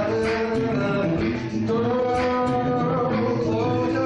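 Live music led by a male singer holding long, sustained notes.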